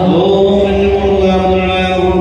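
Male mantra chanting for a fire offering, held on long, steady notes, with the pitch sliding up into a new phrase at the start.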